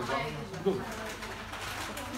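Indistinct low murmured voices of people in a room, short and broken, with a brief louder sound about two-thirds of a second in.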